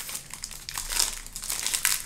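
A Topps baseball card pack's foil-lined wrapper being torn open and crinkled by hand: a dense, crackling rustle with louder peaks about halfway through and near the end.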